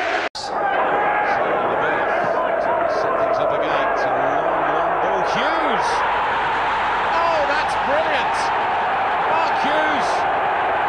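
Football stadium crowd noise: a steady wash of many voices with some chanting. There is a brief break in the sound just after the start, at a cut between clips.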